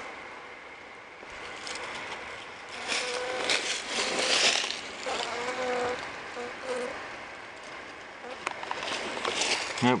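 A few short, faint buzzes of honeybees at the entrance hole of a feral colony in a hollow tree, over close rustling and scraping noise.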